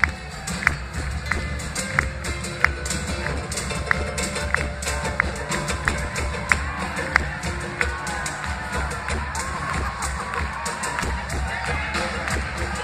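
Live band music with acoustic guitars, accordion and drums, a sharp percussive click on the beat about every two-thirds of a second. Crowd noise rises near the end.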